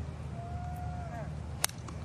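A golf iron striking the ball off the tee: one sharp, crisp crack about one and a half seconds in.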